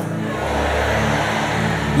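Church keyboard holding a sustained chord, with a deep bass note coming in just after the start and staying steady.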